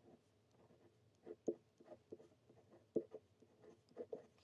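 Kakimori steel nib scratching across a paper swatch card as a word is handwritten: a run of faint short pen strokes, with two sharper ones about a second and a half and three seconds in.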